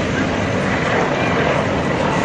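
Heavy armoured military vehicle's engine running steadily as it drives over gravel, with a dense, even noise over it.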